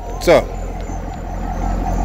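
2012 Chevrolet Corvette Grand Sport's 6.2-litre LS3 V8 idling with a steady low rumble.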